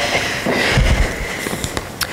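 Rustling and handling noise close to the microphone, with scattered light clicks and a soft low thump about a second in.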